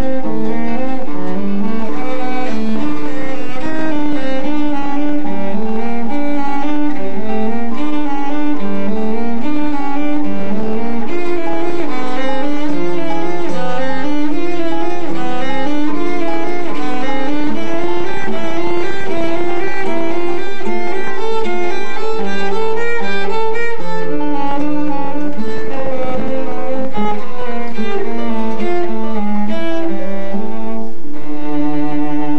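Cello and classical guitar playing a classical duet, the bowed cello and the plucked nylon-string guitar sounding together in a busy run of changing notes.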